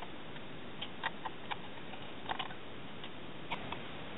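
Faint, irregular small clicks and ticks of a small screwdriver working the heatsink screws out of a Fujitsu Siemens Amilo Pa 3553 laptop, over a steady hiss.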